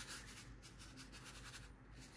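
Near silence: room tone with faint, dry rustling.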